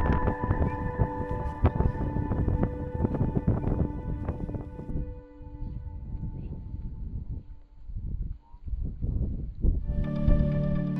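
Gusty wind buffeting the microphone, an uneven low rumble that eases about halfway through, under soft background music with long held tones.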